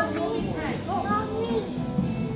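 Children's voices calling out in an indoor play area, over background music.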